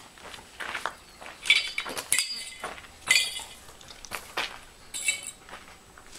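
Small metal objects clinking, four times, each with a short bright ring.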